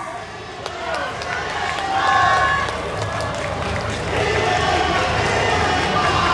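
Street crowd noise with scattered voices, weaker than the loud shouted calls around it, and a low rumble underneath from about three seconds in.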